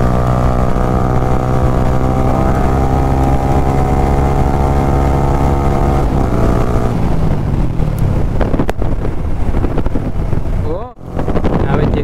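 Yamaha R15 single-cylinder engine at high revs under throttle, its note climbing slowly as the bike accelerates past 100 km/h. About six seconds in the throttle closes and the engine note falls away, leaving wind rushing over the microphone as the bike slows.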